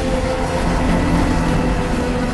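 Mi-17 military helicopter in flight: its twin turbine engines and main rotor make a steady, loud noise.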